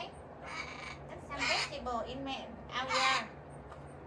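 Pet parrot squawking: two loud, harsh calls about a second and a half apart, among softer chatter.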